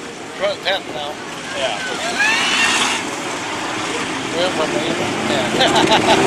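Engines of a pack of sport modified dirt-track race cars running, growing louder near the end, with spectators talking nearby.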